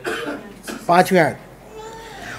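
A man coughing into a microphone, with a short voiced sound about a second in.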